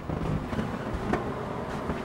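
Handling noise from a handheld camera being carried: a low, steady rustling rumble with a faint click about a second in.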